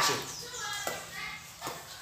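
A dog making a few short, soft yips or whines, not yet a full bark, as she tries to bark on a trained cue.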